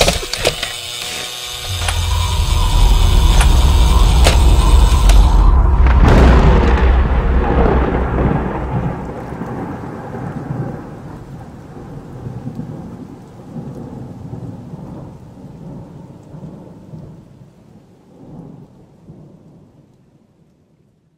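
Thunder: a deep rumble builds over a few seconds, a loud crack comes about six seconds in, then the rolling rumble and a rain-like hiss slowly fade away.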